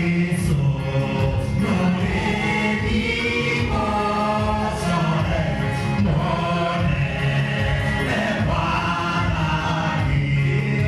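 Many voices singing a gospel hymn together, with a lead voice on a microphone through the hall's sound system.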